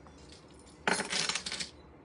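Metal costume jewelry clinking and jangling as it is handled, a brief clattering burst just under a second long about midway through.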